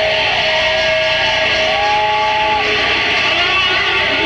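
Electric guitar feedback: thin, whistling tones held over a loud, steady wash of noise, with a second tone that bends upward and holds for about a second midway through.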